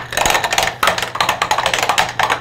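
A plastic Plinko chip clattering down a wooden pegboard, striking metal pegs in a rapid, irregular run of sharp clicks and taps.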